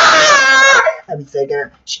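A young man's loud, high-pitched wailing scream in falsetto, put on as a woman crying out in pain; its pitch slides down and it breaks off just under a second in. A few short, quieter vocal sounds follow.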